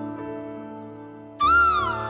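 Instrumental bamboo-flute (bansuri) music over held backing chords that slowly fade. About one and a half seconds in, the music jumps louder with a new melody note that swoops up and then down in pitch.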